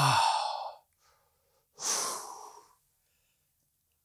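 A man's drawn-out, falling 'oh' at the start, then one forceful breath out about two seconds in: breathing hard from the effort of slow leg circles done lying on the back.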